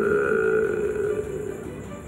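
A man's drawn-out hesitation sound, one long held "ehh" at a steady pitch that slowly fades.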